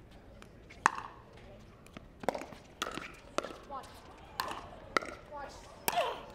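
Pickleball paddles striking a plastic pickleball in a rally: about seven sharp pops, spaced irregularly half a second to a second apart.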